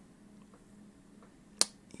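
A single short, sharp click about one and a half seconds in, over quiet room tone.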